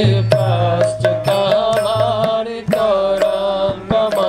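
Devotional Sanskrit mantra music: long held, wavering melodic notes over a low hum, with scattered drum strokes.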